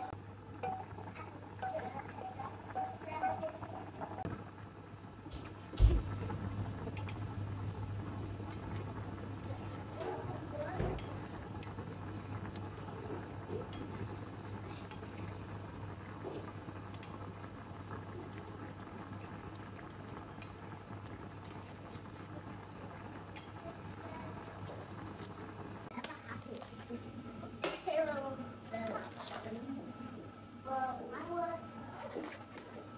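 Pork and coconut water boiling hard in an enamelled cast-iron pot, with clinks and scrapes of a metal skimmer against the pot as the foam is skimmed off. There is one loud knock about six seconds in, after which a low steady hum runs under the bubbling.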